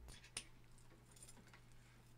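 Near silence: a faint steady low hum, with one small click about half a second in as quarter-inch jack plugs are pushed together.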